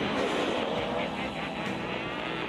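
Cartoon action soundtrack: a loud, steady roaring sound effect with a voice yelling over it.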